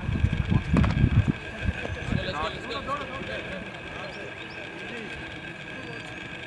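Wind buffeting the microphone in the first second, with one sharp knock about a second in, then faint distant voices calling across an open field.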